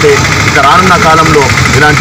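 A man speaking emphatically into a microphone, over a steady low background hum.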